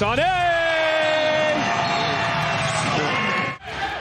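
A basketball play-by-play commentator's long, drawn-out shout of a player's name on a dunk, held for about three seconds and sliding slightly down in pitch. The audio cuts off suddenly about three and a half seconds in.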